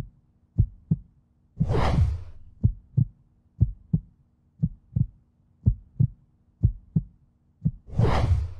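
Heartbeat sound effect: paired low thumps about once a second, with a swelling whoosh about two seconds in and another at the end.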